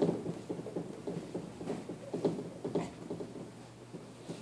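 Whiteboard eraser wiping across a dry-erase board in quick repeated rubbing strokes, which thin out near the end.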